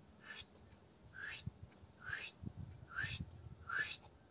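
Breathy, whisper-like vocal sounds from a person, five short ones at about one a second, each rising in pitch.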